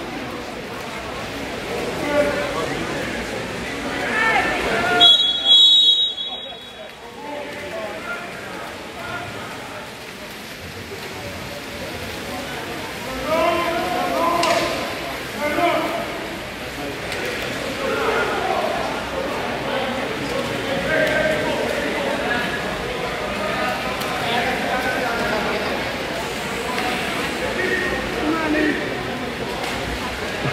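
Spectators talking in an echoing indoor pool hall, with a referee's whistle blown briefly about five seconds in.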